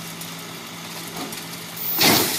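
Tow truck engine running steadily with a low hum while the truck winches an overturned car back onto its wheels.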